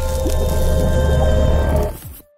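Logo-intro music: sustained synth tones under a wet, splashy sound effect, dropping away sharply at the very end.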